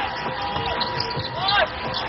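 Basketball arena game sound: crowd noise under arena music holding steady notes, with a basketball being dribbled on the hardwood court.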